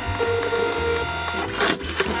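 Nemonic thermal sticky-note printer feeding paper as it prints a QR code: a steady whine of several held tones for about a second and a half, then a short noisy burst near the end.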